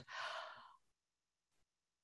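A short, soft breath out, a sigh close to a microphone, lasting under a second, then near silence.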